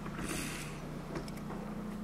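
Steady low hum, with a brief hiss a fraction of a second in and a couple of faint clicks.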